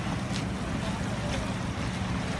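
Steady rushing of hot water pouring out of a burst pipe and flooding the street.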